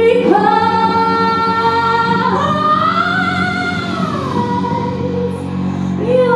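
Live female vocal harmony singing a long wordless held note that swells up in pitch about two seconds in and slides back down about four seconds in, over a low steady drone.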